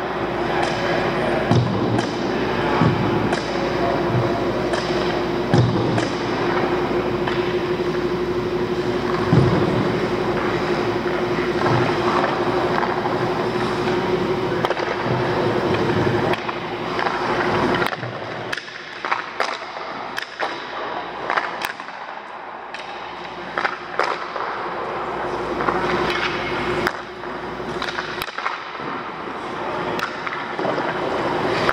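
Ice skate blades scraping and carving on rink ice, with scattered sharp clacks. A steady hum runs beneath and stops a little past halfway, after which the scraping is quieter and more broken.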